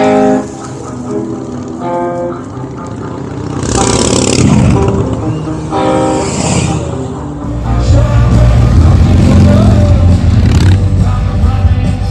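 Live band music from a stage mixed with a motorcycle engine as a bike rides down the barriered lane. The engine surges about four seconds in and again around six seconds, then a heavy low rumble dominates the second half.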